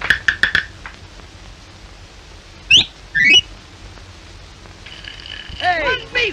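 Cartoon sound effects: a few quick taps at the start, then two fast rising whistle-like glides about half a second apart.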